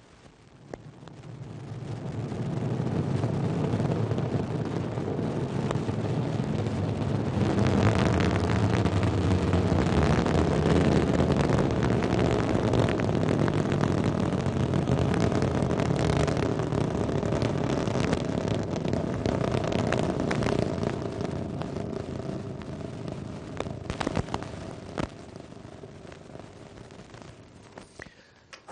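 Ariane 5 rocket roaring at liftoff, its Vulcain core engine and two solid rocket boosters firing. A deep rumble swells over the first few seconds and holds loud with sharp crackles through it, then fades away over the last several seconds as the rocket climbs.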